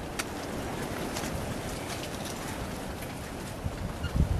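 Steady outdoor rush of wind with faint footfalls of walkers on a dirt woodland path, a few light ticks over an even hiss.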